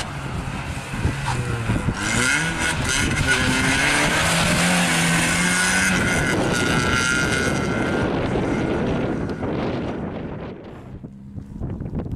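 Škoda Fabia slalom car driving past at racing pace, its engine revving up and down. It is loudest in the middle and fades away near the end.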